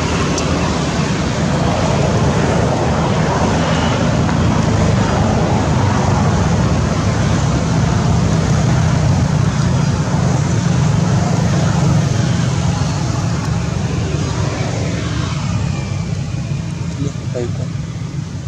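A loud, steady rushing noise with a low rumble, easing a little near the end.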